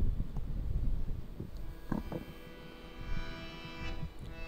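A low rumble with a few short knocks, then a reedy keyboard instrument, harmonium-like, begins holding a sustained chord about halfway through as a hymn's instrumental introduction starts.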